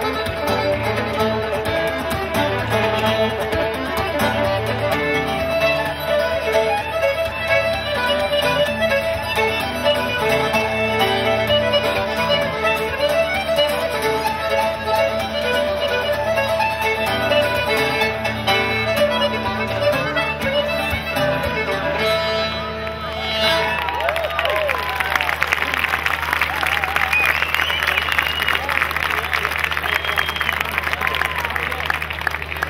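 Traditional Celtic tune played on fiddle, button accordion and acoustic guitar, ending about three-quarters of the way through. The audience then applauds, with a few whistles near the end.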